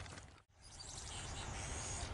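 Outdoor rural ambience: a steady low rumble and faint high chirping, cut by a brief dropout to silence about half a second in.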